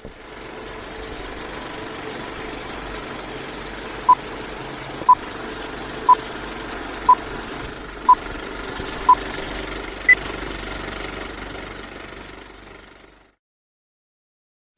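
Old-film countdown sound effect: a steady film-projector whirr and clatter. Over it come six short beeps at the same pitch, one each second, then a single higher beep about ten seconds in. The projector noise fades out shortly before the end.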